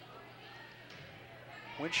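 Faint gymnasium background hum with the soft hit of a volleyball being served overhand. A commentator's voice starts near the end.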